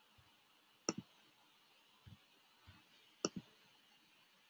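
Quiet clicks of a computer keyboard and mouse as numbers are entered in a spreadsheet: two sharp double clicks, about one second in and just past three seconds, with a few faint ticks between.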